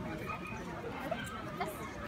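Indistinct chatter of several people talking at once in the background, with no single clear voice.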